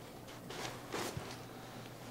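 Soft rustling of a Vicair air cushion's fabric cover being handled, in a few faint bursts about half a second to a second in, with a small click shortly after.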